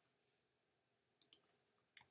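Near silence, then faint clicks from a computer keyboard and mouse as text is edited: two quick clicks a little over a second in and one more at the very end.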